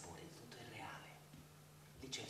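A man whispering faintly, breathy and hushed, over a low steady hum.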